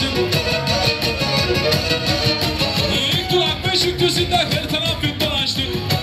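Black Sea kemençe bowed in a lively folk tune, accompanied by keyboard with a steady beat.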